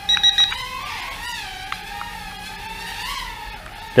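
VK330 micro drone's direct-drive motors and propellers whining steadily, the pitch rising briefly about a second in and again near the end as the throttle is punched through flips. A quick run of short high beeps near the start.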